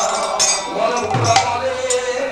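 Bhajan music playing: low hand-drum strokes and bright clinking of small hand cymbals, with a held sung or played note coming in near the end.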